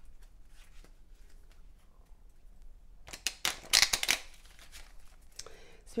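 A small tarot deck being shuffled by hand: faint scattered card clicks at first, then a quick, louder burst of riffling cards for about a second midway.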